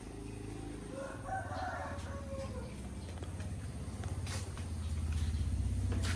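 A rooster crows once, starting about a second in and lasting just under two seconds. Beneath it an engine runs steadily and grows louder toward the end.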